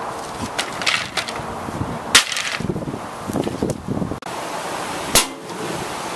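An axe striking and splitting thin, dry wooden slats: a few small cracks within the first second, then a loud sharp crack of splintering wood about two seconds in. Another sharp crack comes a little after five seconds.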